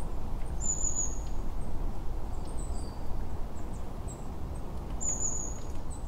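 A low, steady rumble of outdoor background noise with a few short, high, thin whistled bird calls. Two stronger calls come about a second in and again near five seconds.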